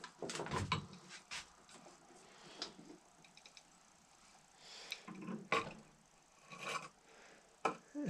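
Handling noise from a small metal lead-melting pot being moved about and set down on a wooden workbench: scattered clunks, knocks and scrapes, several close together in the first second and a half, then a few more spread out.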